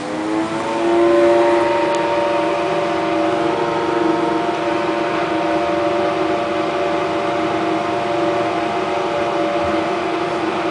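Drive motor of a 1964 Schindler traction lift whining as the car sets off downward. The whine rises in pitch and loudness over about the first second, then holds one steady pitch while the car travels at full speed.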